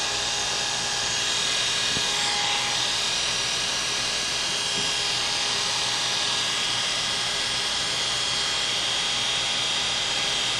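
Electric hair clippers running with a steady buzz while trimming the short hair at the nape of a man's neck.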